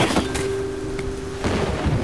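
Storm sound effects: steady rain with a sudden crash at the start, under a held low musical note that stops about a second and a half in.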